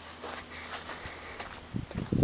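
Footsteps on pavement over faint outdoor hiss, with a few low thumps near the end.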